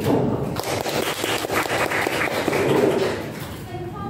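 A small group of people clapping, a short round of applause with some voices mixed in.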